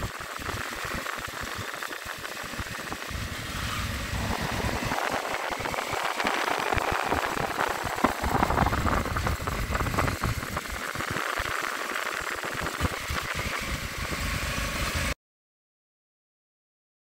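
Motorcycle engine running as the bike rides along, a steady, uneven noise that cuts off suddenly near the end.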